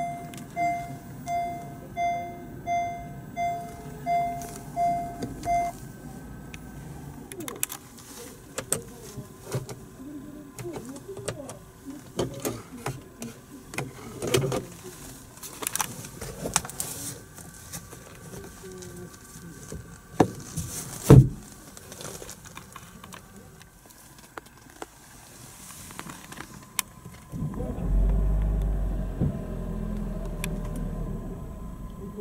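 Honda Jade Hybrid's in-cabin reverse warning chime: about eight evenly spaced beeps, one every 0.7 s or so, sounding while the shift lever is in R and stopping about six seconds in. After that come scattered clicks and knocks of handling inside the car, one louder knock, and a low rumble that starts near the end.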